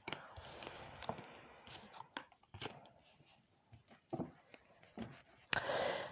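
Oracle cards being handled and laid down on a cloth-covered table: a soft sliding rustle, then a few scattered light taps and clicks, the sharpest one near the end.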